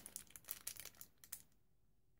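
Faint crinkling of a small clear plastic bag being handled by fingers, a few soft rustles that stop about one and a half seconds in.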